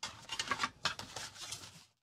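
Fingers rummaging through a pile of die-cut paper stickers in an open metal tin: a dense crinkling rustle with many small clicks, stopping near the end.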